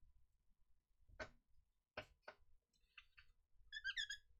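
A baby wipe rubbed across a laptop CPU's bare silicon die, faint. It starts with a few soft scuffs and ends with a short, wavering, high-pitched squeak as the wipe grips the polished die. The squeak is the sign that the old thermal paste is gone and the die is squeaky clean, which he calls "a good sound".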